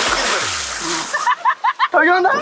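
Water splashing in the sea beside the boat, then about a second in a person's voice comes in with a quick run of short syllables.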